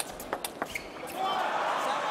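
Table tennis ball clicking off bats and table in the last few strokes of a rally, then a crowd cheering and shouting from about a second in as the point is won.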